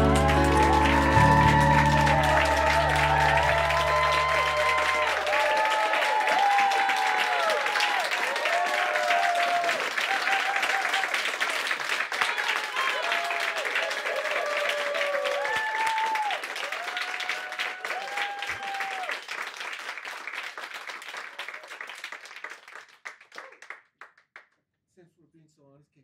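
The band's last chord rings and dies away over the first few seconds while a small audience applauds and cheers. The clapping thins and fades out near the end.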